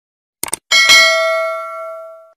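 Subscribe-button sound effect: a quick double mouse click, then a notification bell dings once and rings out, fading over about a second and a half.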